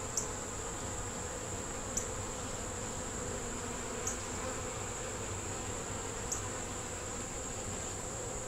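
Steady hum of many honey bees flying around an open Langstroth hive. A few faint short ticks come about every two seconds.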